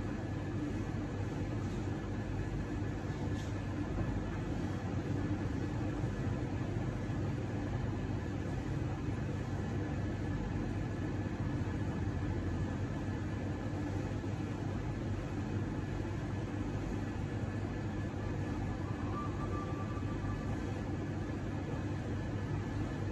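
Steady low rumble and hum of machinery in a room, unchanging, with a faint steady high-pitched whine held over it.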